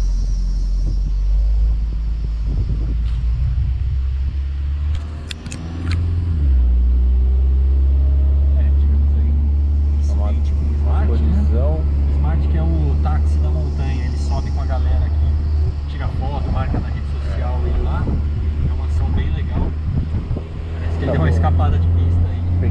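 Small car's engine and road noise heard from inside the cabin while driving at low speed: a steady low drone that dips briefly about five seconds in and then comes back stronger.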